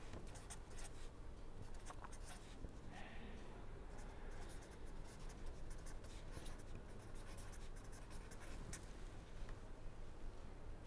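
Pen scratching on paper in faint, irregular short strokes as a line of handwriting is written.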